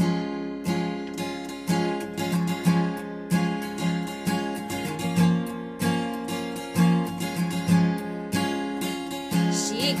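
Solo acoustic guitar playing a song's intro, with chords strummed in a steady rhythm of about two strokes a second that starts suddenly. A woman's singing voice comes in at the very end.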